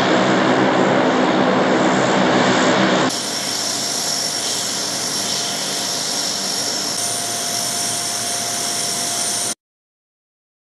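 Lockheed C-130 Hercules turboprop engines running as the aircraft taxis: a loud propeller drone with a steady pitched hum. About three seconds in, a cut brings a quieter engine sound with a high, steady turbine whine. The sound cuts off abruptly near the end.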